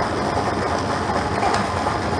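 Lottery draw machine running steadily, its balls tumbling and clattering in the chamber as the free ticket letter is selected.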